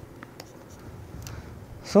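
Faint scratching and light ticks of a stylus writing on a pen tablet.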